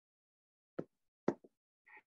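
Two sharp computer-mouse clicks about half a second apart, the second followed by a softer release click, amid otherwise near-silent room tone.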